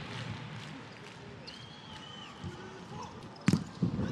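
Volleyball being struck during a rally, with one sharp loud smack of the ball about three and a half seconds in and a lighter hit just after. An arena crowd murmurs steadily underneath, and a brief high squeak comes near the middle.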